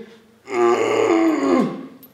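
A man's groan of effort, voiced as he exhales while pushing a cable tricep pushdown down. It starts about half a second in, lasts about a second and drops in pitch at the end.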